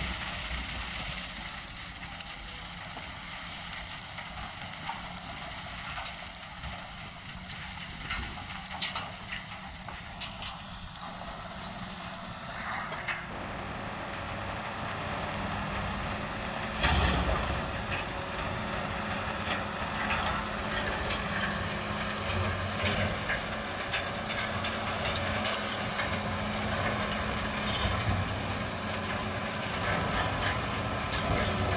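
An International Harvester 1086 tractor's six-cylinder turbo-diesel is running a Vermeer bale processor whose flail chopper shreds a round bale of corn stalks and blows the bedding out, with small clicks of flying stalks throughout. The sound is distant at first and grows louder as the rig comes close about halfway through, with a sudden loud burst a little after that.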